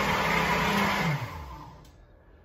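Countertop blender running steadily on a smoothie, then switched off about a second in, its motor winding down with a falling pitch until it stops.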